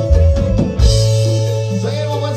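Live band playing a chilena, a Oaxacan dance tune, with a steady bass line and drum beats.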